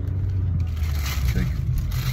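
Steady low rumble of a car interior, with rustling and scraping from about half a second in as things are handled.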